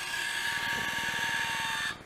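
Small electric gear motor of a Bulldog valve robot running with a steady whine, turning a water shut-off valve closed; it cuts off abruptly near the end.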